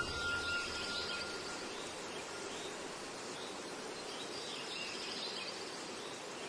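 Steady background hiss with faint, scattered high chirps, like distant birds, and a thin high tone fading away in the first second and a half.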